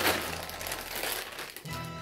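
Clear plastic packaging bag crinkling as it is handled and opened, loudest right at the start, over quiet background music.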